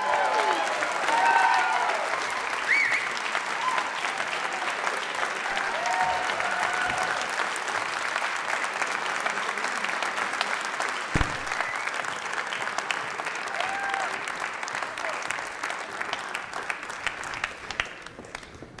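Audience applauding, with scattered whoops and cheers over the clapping, most of them in the first few seconds.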